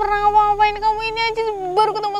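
A woman's high-pitched wailing cry, held long on one note, sagging in pitch and breaking up near the end.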